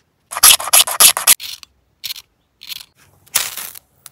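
A quick run of about eight rasping scrapes, then a few short single scrapes and one longer scrape near the end: hand scraping with a small metal piece from a disposable lighter.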